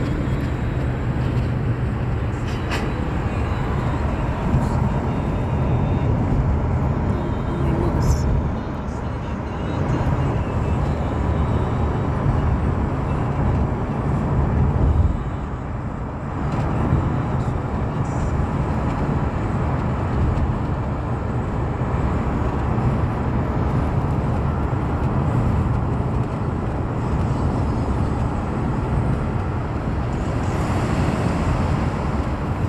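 Steady road and engine noise heard from inside a moving car's cabin, dominated by a deep low rumble. It dips briefly twice, about nine and about sixteen seconds in.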